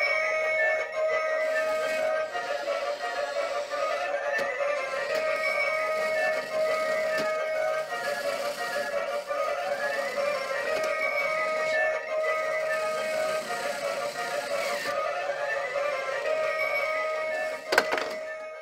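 Toy claw crane machine playing its electronic game tune while a round runs: a repeating melody of held tones and swooping notes with a few faint clicks, cutting off shortly before the end as the game finishes.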